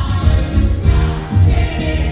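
Musical theatre ensemble singing in chorus over a pop-rock band with a steady, heavy beat.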